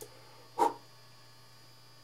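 A steady low electrical hum, with one short spoken word about half a second in.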